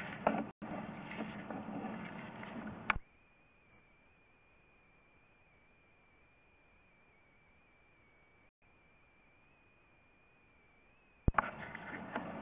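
Low background noise that cuts off with a click about three seconds in, leaving near silence with only a thin, steady, slightly wavering high whine; near the end another click brings the background noise back. The pattern is that of the inspection rig's microphone audio being switched off and on again.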